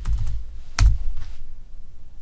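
A few keystrokes on a computer keyboard, typing in a value. The loudest key strike comes a little under a second in and carries a low thud.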